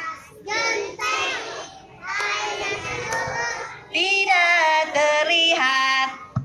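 A woman singing a children's song into a microphone: three short sung phrases, the last ending on a held note near the end.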